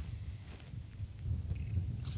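Low, uneven wind rumble on the microphone, with a few faint ticks as a spinning reel is wound in with a hooked crappie on the line.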